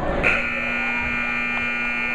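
Gym scoreboard buzzer sounding one long steady buzz that starts about a quarter second in, as the wrestlers break apart at the end of the period.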